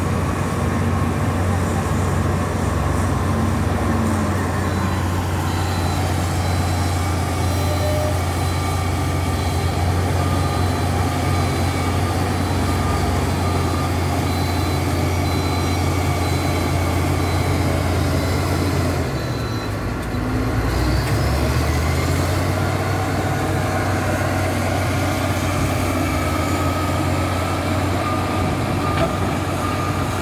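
Heavy diesel earthmoving machinery running: a steady, loud low engine drone from the crawler bulldozer and dump truck working close by, with a brief drop and change in the drone about two-thirds of the way through.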